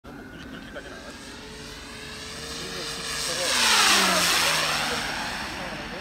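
Radio-controlled P-51D Mustang model (1500 mm wingspan) making a fast pass: its motor and propeller noise swells to a loud peak about four seconds in, the pitch dropping as it goes by, then fades as it flies away.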